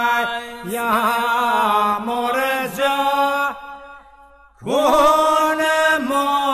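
Male voices singing an unaccompanied Albanian Kërçova folk song in two-part polyphony over a held drone (iso). The singing breaks off a little past halfway and comes back in together about a second later.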